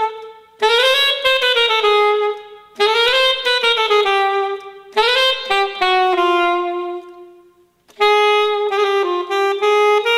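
Solo saxophone playing unaccompanied phrases of about two seconds each, with short breaks between them. A long held note near the middle dies away in the hall before the next phrase.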